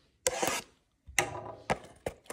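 Shrink-wrapped cardboard trading-card blaster box rubbing and scraping as it is handled on a table. There are two short bursts, one near the start and a longer one from about a second in with a few sharp clicks.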